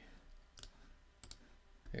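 Computer mouse clicking while a file is chosen in a dialog: one click about half a second in, then a quick double click a little past one second.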